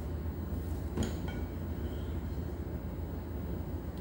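Rubber spatula stirring thick oat and date cookie dough in a glass bowl, with a single knock about a second in, over a steady low hum.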